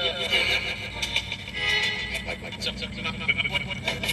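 Ghost-box app sweeping, giving rapidly chopped fragments of noise, clicks and clipped voice-like snippets over a low rumble.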